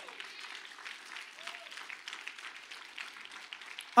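Church congregation applauding, the clapping fairly soft and even, with a brief voice among it about a second and a half in.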